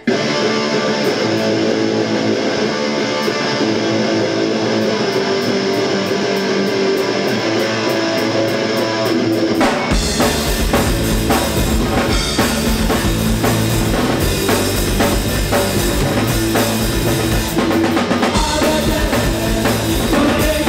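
Live punk rock band starting a song: electric guitars play alone at first over a steady high ticking, then the full band with drum kit and bass crashes in about halfway through.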